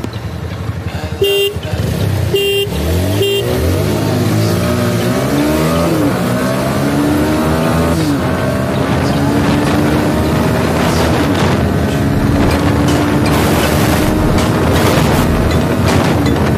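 Three short horn toots, then a Bajaj Pulsar NS 160's single-cylinder engine accelerating hard from a standstill: its pitch climbs and drops back at each upshift, with quick shifts in the first eight seconds, then a long, slow rise in a high gear.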